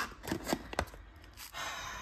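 Foil tea pouch crinkling as it is handled: a few sharp crackles in the first second, then a softer rustle.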